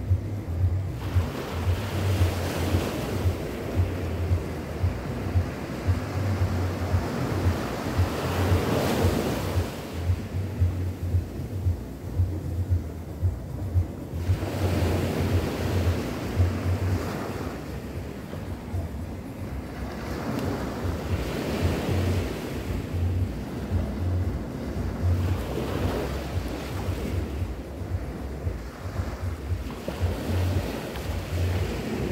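Small waves breaking and washing up a sandy beach, the surf swelling every few seconds. Wind buffets the microphone, adding a low rumble.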